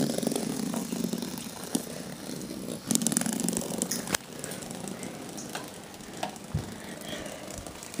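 Small electric motors of battery-powered toy cars buzzing in two spells, for about two seconds at the start and again for about a second near the middle, with scattered clicks and a sharp knock about four seconds in.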